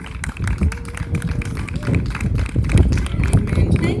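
A small audience clapping after a song ends, a dense, irregular patter of claps, with one voice calling out briefly about a second in.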